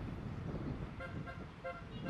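Street traffic rumble with a car horn giving a quick series of short toots from about a second in.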